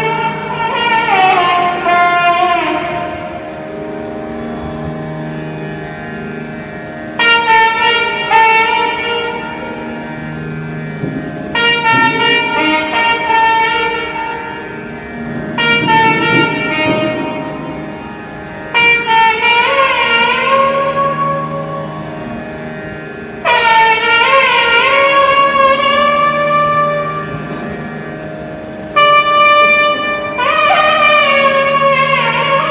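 Nagaswaram playing slow phrases of long held notes with sliding ornaments. A new phrase enters loudly every few seconds and then dies away, over a steady drone.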